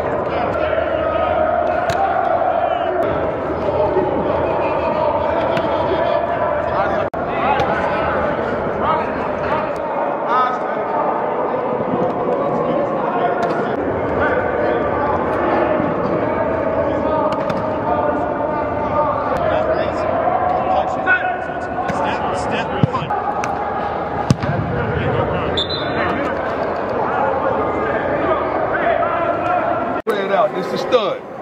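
Many voices talking and calling at once, too mixed to make out words, with a few sharp thumps in the second half.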